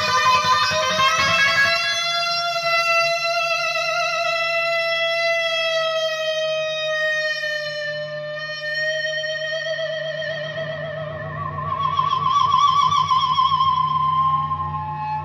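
Electric guitar with a whammy bar feeding back through a distorted amplifier: a long sustained note with a slight waver that drifts slowly down in pitch. About ten seconds in, the feedback jumps to a higher, wavering note, which grows louder near the end.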